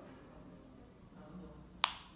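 A single sharp click near the end, with a brief ring after it.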